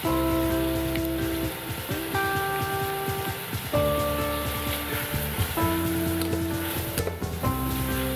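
Tuna and onion frying in butter in a stainless steel pot, a steady crackling sizzle, under soft background music of held chords that change every second or two.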